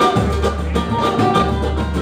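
Live samba music from a band with plucked strings and percussion, playing at a steady level between sung lines.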